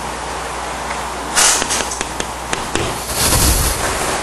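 Steady hiss of microphone and recording noise, with a brief rustling burst about a second and a half in and a louder rumbling rustle near the end.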